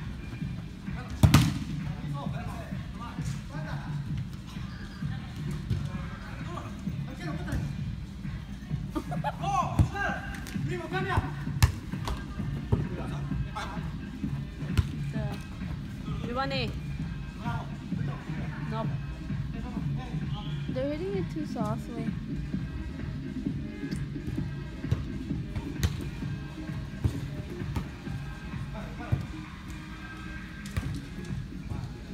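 Soccer ball kicked on an indoor artificial-turf pitch, with one sharp, loud thump about a second in and lighter kicks later. Players shout at intervals over steady background music.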